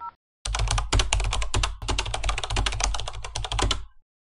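Computer keyboard typing sound effect: a rapid run of keystrokes that starts about half a second in and cuts off just before the end.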